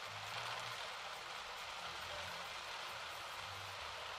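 Heavy rain falling on a car's windshield and roof, heard from inside the cabin, as a steady even hiss with a faint low hum from the car underneath.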